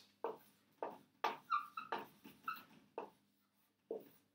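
Dry-erase marker drawing on a whiteboard: about eight short strokes, several with a brief high squeak.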